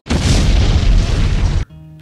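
Explosion sound effect: a loud, rumbling boom lasting about a second and a half that cuts off suddenly, followed by faint steady music tones.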